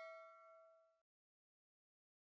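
Faint tail of a notification-bell 'ding' sound effect ringing out on several steady tones and fading away about a second in.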